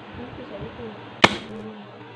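A single sharp, loud crack about halfway through, over a low background hum.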